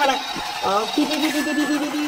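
A person's voice finishing a phrase, then one long steady pitched sound held for about a second near the end.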